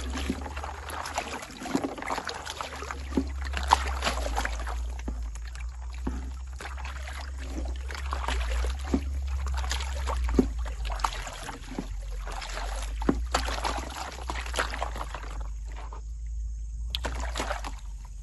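Water sloshing and splashing as a gold pan of sand and gravel is swirled and dipped in a shallow stream, with sharp clicks now and then, dropping away briefly near the end.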